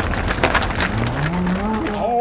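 A cow mooing: one long low moo that rises in pitch, starting about a second in, over a steady rumbling noise with scattered clicks and knocks as a herd of cattle moves across a paved road.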